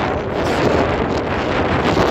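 Wind blowing across a phone's microphone: a loud, steady rushing noise with no clear pitch.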